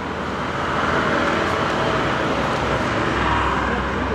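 Street traffic: the steady rush of a passing motor vehicle on the road, swelling about a second in and holding, with a low rumble underneath.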